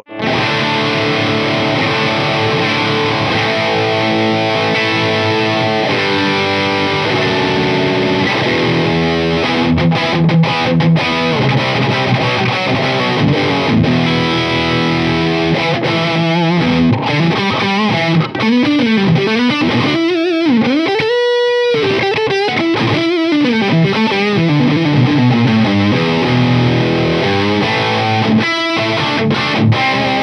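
Gibson Slash signature Les Paul electric guitar played through an overdriven amp: a distorted rock passage of riffs and lead lines. Past the middle come wide string bends and vibrato, including one held, bent note.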